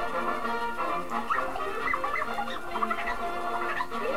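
Orchestral film music with short, high chirping sounds over it from about a second in.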